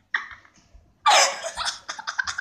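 Conure making harsh, cough-like sounds: a short one just after the start, then a louder rasping one about a second in, trailing into several quick choppy bits.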